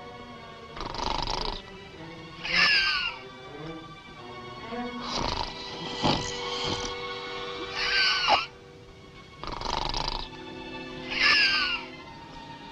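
Exaggerated comic snoring from a man asleep in bed: a rasping snore on each breath in and a whistling breath out that slides down in pitch, repeating about every three seconds, over soft orchestral underscore.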